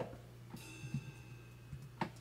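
A single suspended cymbal stroke played back by notation software. It starts suddenly about half a second in and rings on with a bright shimmer. A few soft mouse clicks can be heard alongside.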